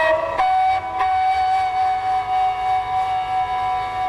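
Bansuri flute in Raag Yaman Kalyan gliding briefly, then holding one long, steady note from about half a second in, over a tanpura drone.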